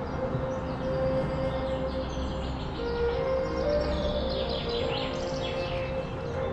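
Soft background score: a held, sustained note that shifts down slightly about three seconds in and back up later, with birds chirping faintly over it.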